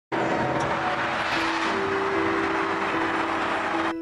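Large crowd cheering and shouting in a dense, steady roar over held background music notes; the crowd noise cuts off suddenly near the end.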